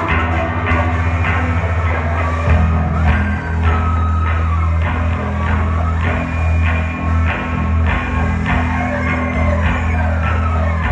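Live noise-rock band playing: electric guitars and a Pearl drum kit over a heavy, sustained low drone, with drum hits throughout.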